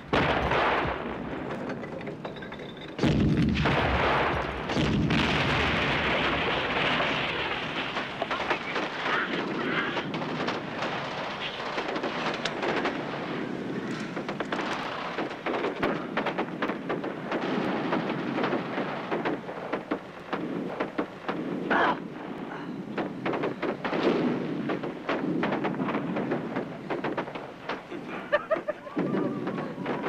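Battle sound effects: sustained gunfire with many sharp shots. A heavy boom comes about three seconds in, and scattered loud cracks follow later.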